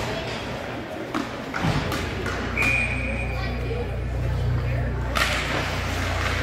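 Ice hockey game sounds: sharp clacks of sticks and puck, a few in the first two seconds and the loudest about five seconds in. Under them runs a low steady hum from the arena.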